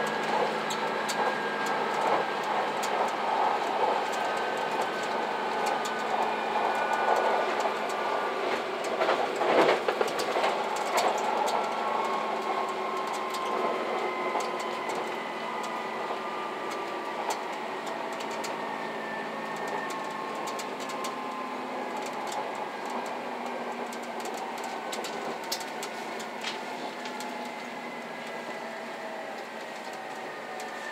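JR Shikoku 2000-series diesel tilting express railcar heard from the cab, slowing for a station stop. Its running noise carries several whining tones that fall steadily in pitch as it slows, with sharp clicks of wheels over rail joints and a louder jolt about ten seconds in. The sound grows gradually quieter toward the end.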